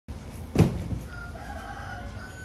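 A sharp thump about half a second in, then a rooster crowing in the distance, one long, faint, steady call.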